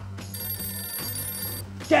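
Desk telephone giving one electronic ring, a cluster of high steady tones lasting just over a second, over a low steady background of music.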